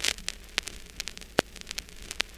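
Crackle and static: scattered clicks and pops over a low hiss, with one louder pop about two-thirds of the way through.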